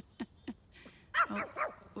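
Pomeranian giving a short run of high barks and yips about a second in.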